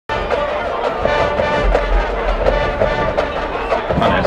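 Marching band brass and drums playing, with steady held notes and regular drum strikes; the music breaks off just before the end.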